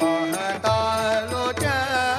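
Live Marathi devotional folk song from the saint-poet tradition: a singer holds long notes that bend and glide, over a steady accompaniment with a drum beating about twice a second.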